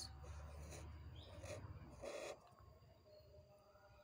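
Faint scratching and squeaking of a felt-tip marker drawn across paper in short strokes, over a low hum. There is one short, slightly louder scrape about two seconds in.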